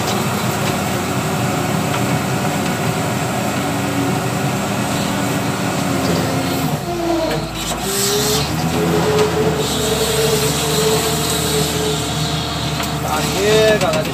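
Case W130 wheel loader's diesel engine running under load as the bucket pushes brush, heard from the operator's seat. The engine tone changes and strengthens for a few seconds about halfway through.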